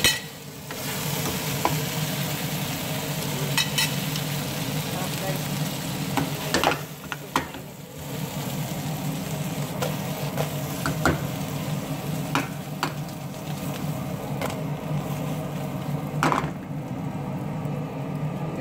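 Shell-on shrimps sizzling as they fry in butter in a metal pan, with scattered clicks and scrapes as they are stirred. The sizzle drops away briefly twice, just after the start and about halfway through.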